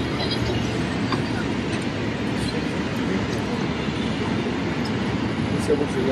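Steady low rumble of city street traffic, even in level throughout.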